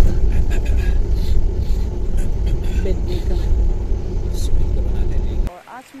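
A car driving over a rough dirt track, heard from inside the cabin as a loud, heavy low rumble of engine and road. It cuts off suddenly near the end.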